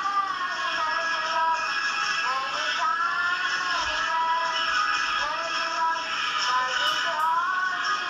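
A worship song playing: music with a singing voice carrying a smooth, gliding melody.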